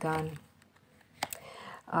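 Two sharp clicks close together about a second in, from a hand handling the tarot cards on the table, between a woman's spoken phrases.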